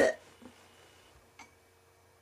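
Near silence: room tone, with a single faint click about a second and a half in.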